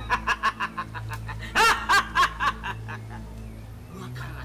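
A man laughing: a fast run of short laughs, then a few louder, longer laughs about a second and a half in, fading out before the end. A steady low music drone runs underneath.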